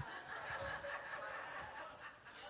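Faint laughter and chuckling from a few listeners.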